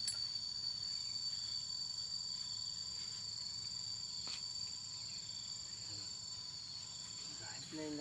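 Insects chirring steadily outdoors, a continuous high-pitched drone on two pitches, with a couple of faint clicks about at the start and about four seconds in.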